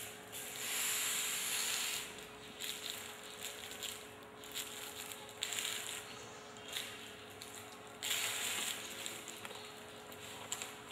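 Small seed beads rattling and clicking in a dish as fingers and a needle pick through them. There are two longer rattles, one just after the start and one about eight seconds in, with lighter clicks between.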